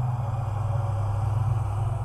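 A steady low drone from the production's background sound bed, with a faint hiss above it, held unchanged through a pause in the narration.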